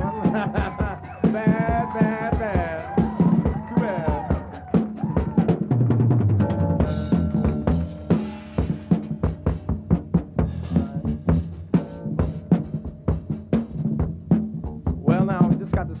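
Live funk-rock instrumental by an electric guitar, bass and drums trio: a lead line with bent, wavering notes over the first few seconds, a strong bass note about six seconds in, and busy drumming with rolls through the rest.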